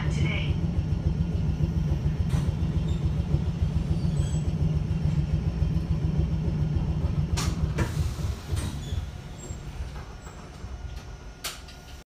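Chikuho Electric Railway 3000-series nose-suspended-drive car running, heard from inside with the windows open: a steady low rumble of wheels and drive, with a few sharp clicks. The rumble fades over the last few seconds as the car slows.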